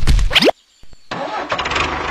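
Dubbed sound effect of a tractor engine starting: a loud burst of cranking, a short pause with a couple of clicks, then the engine catching about a second in and settling into a steady, evenly pulsing idle.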